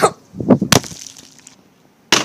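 Plastic water bottle flipped and clattering onto a wooden chair: a cluster of sharp knocks about half a second in, the hardest a little later.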